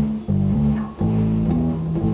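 Electric bass guitar playing a low repeating riff of held notes, with two short breaks between them.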